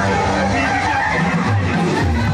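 Water showering down and splashing in a water-park pool, a steady rushing noise, over loud dance music with a heavy bass, with people's voices.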